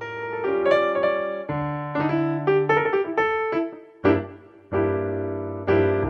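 Background piano music: a melody of separate notes over lower bass notes.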